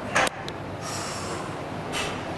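A lifter breathing hard through a heavy barbell bench-press rep: a short sharp breath near the start, then a longer hissing exhale about a second in.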